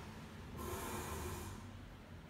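A person's breath: one short, noisy exhale through the nose lasting about a second, starting about half a second in.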